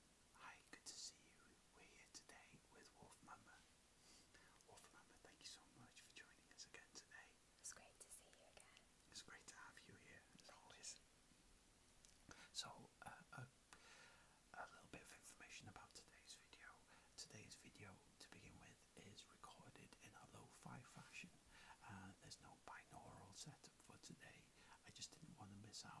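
Quiet whispered speech, with sharp hissing s sounds.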